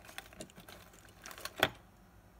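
Light clicks and rubbing as a small quartz watch movement is handled between rubber-cotted fingertips, with a cluster of ticks in the second half and one sharper click near the end.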